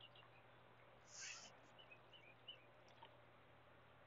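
Near silence: faint outdoor ambience with a few faint bird chirps and a brief soft rustle-like noise about a second in.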